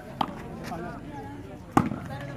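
Two sharp slaps of a hand striking a volleyball, about a second and a half apart, the second louder. Crowd chatter runs underneath.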